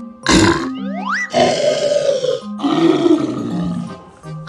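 Edited-in cartoon sound effects over children's background music: a sudden burst, a rising whistle, then two long monster growls as a green zombie head springs out of a toy box.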